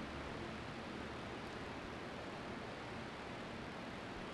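Steady, even hiss of the hall's room tone and sound-system noise, with no distinct event in it.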